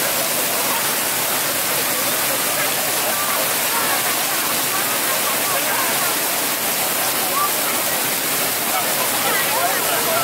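Floor-level fountain jets spraying up and splashing back onto wet paving: a steady rushing of water, with children's and crowd voices faintly over it.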